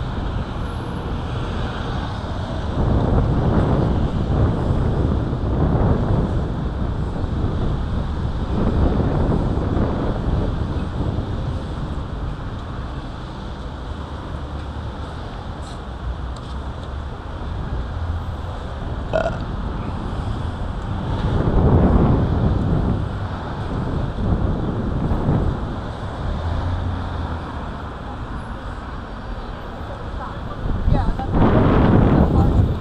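Street noise of car traffic mixed with wind buffeting the microphone: a loud rumble that swells and fades every few seconds.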